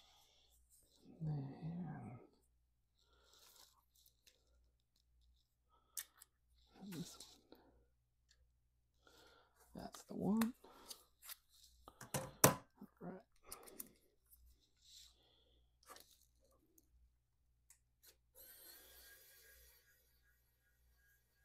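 Scattered clicks and plastic handling noises as a 3D printer's print head is worked on by hand. Near the end, a small electric screwdriver whirs briefly.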